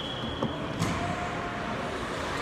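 Steady background noise of an indoor shopping mall. A thin high tone runs through the first second and cuts off, and a single click follows near the one-second mark.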